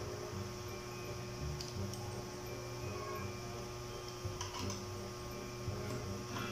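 Steady low electrical mains hum, with a few faint plastic clicks as a helmet camera mount is handled and its thumb screw loosened.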